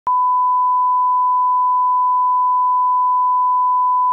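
Line-up test tone played with SMPTE colour bars: a single unbroken sine tone held at one steady pitch, starting with a faint click at the very beginning.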